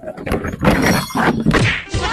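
Red plastic chairs knocking and a person falling onto the ground: several thuds and whacks in quick succession, loudest about two-thirds of a second in and again past the middle.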